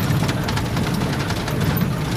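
Steady low engine rumble and road noise of a moving vehicle, heard from inside its cabin.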